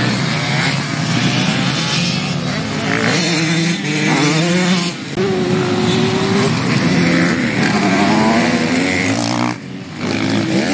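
Motocross bike engines revving on the track, the pitch climbing and dropping several times, with a brief dip in loudness about five seconds in and another near the end.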